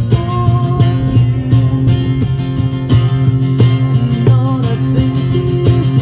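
Live acoustic guitar strumming with a cajon slapped by hand to keep a steady beat, an instrumental passage without vocals.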